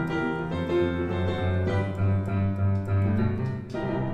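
Electronic keyboard played with a piano sound: sustained chords over a moving bass line, with a brief dip and a fresh chord struck near the end.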